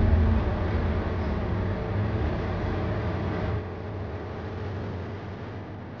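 Soundtrack ambience: a low steady drone under a rushing hiss that fades gradually, dropping a step about three and a half seconds in.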